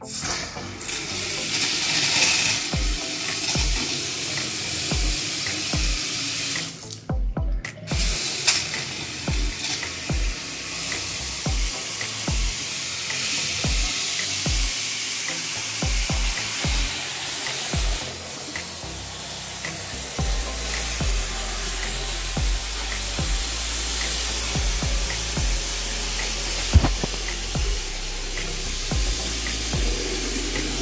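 Water running steadily from a newly installed bathroom faucet into a sink basin and down the drain, with the sound briefly cutting out about seven seconds in. The water is turned on to test the new drain and trap connections for leaks.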